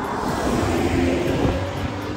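A BMW car passing close by, a steady rush of tyre and engine noise.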